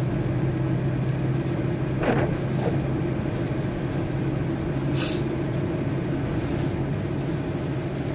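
Steady engine and tyre noise heard inside a vehicle driving on a wet road: a low, even hum. A brief hiss cuts through about five seconds in.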